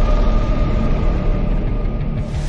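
Dark cinematic intro sound design: a dense, loud low rumble with a steady high tone held over it.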